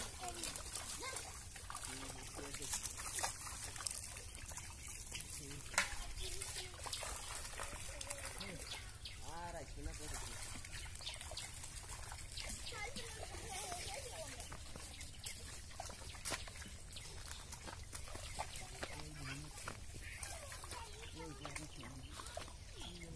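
Water sloshing and trickling around men wading through a pond as they drag a fishing net, with faint, distant voices calling now and then over a steady outdoor hiss.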